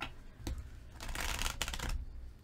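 A tarot deck being riffle-shuffled by hand: a single tap about half a second in, then a quick flurry of card clicks as the two halves riffle together, lasting under a second.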